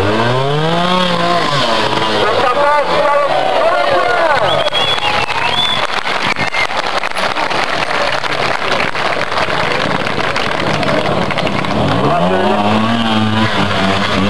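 Single-cylinder trials motorcycle engine blipping in short bursts: the revs rise and fall at the start and again near the end, with the engine running between bursts, over the chatter of a close crowd.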